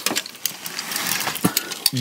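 Hanging clothes rustling and clothes hangers clicking as garments on a wardrobe rail are pushed aside, a dense run of small clicks over a rustling hiss.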